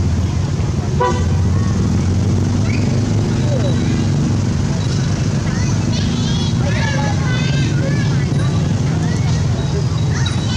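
A steady low rumble like a running motor, with high, wavering calls over it about six to eight seconds in.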